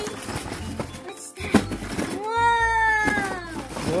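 Cardboard and styrofoam packing scraping and rubbing as the insert of a toy train set is worked out of its box. About two seconds in, a long squeal rises and then falls, lasting about a second and a half.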